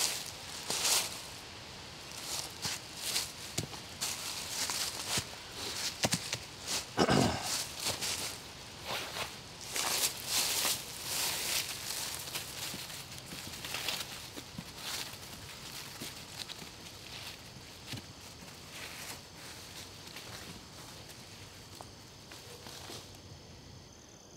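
Footsteps through dry fallen leaves, an irregular run of rustling steps that grows fainter as the walker moves away.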